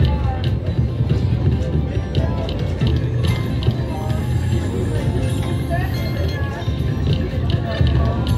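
Aruze Jie Jie Gao Sheng slot machine playing its free-games bonus music, with short clicks and chimes as the reels spin and stop on each of about three free spins, over the din and chatter of a casino floor.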